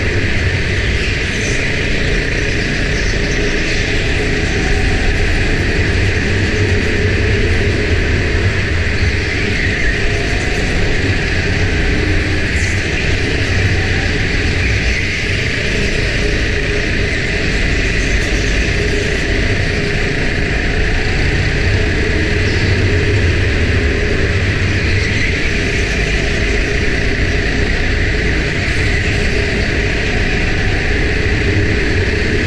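Go-kart running at speed, heard from a camera mounted on the kart: a loud, steady mix of engine and rumble with no clear rise or fall in pitch.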